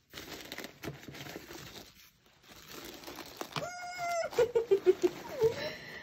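Tissue paper rustling and crinkling as it is pulled open inside a gift box, with a short pause about two seconds in. Past halfway comes a high, held vocal note, then a quick run of short falling notes.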